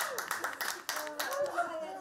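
Two people clapping their hands in a quick run of claps.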